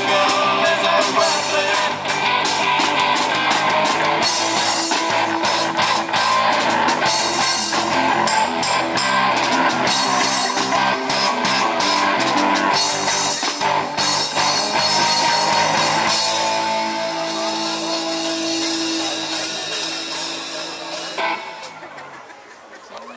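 Live rock band playing, with electric guitars and a drum kit. About sixteen seconds in the drums stop and held guitar notes ring on, fading out as the song ends.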